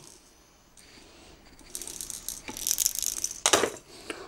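Small plastic baby rattle toy rattling as it is handled and shaken, a quick run of irregular rattles starting about a second and a half in, loudest near the end.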